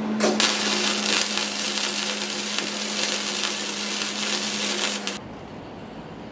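Gasless flux-core arc welder crackling and sizzling steadily while a steel engine mount plate is welded, over a steady low hum. It runs for about five seconds and cuts off suddenly near the end.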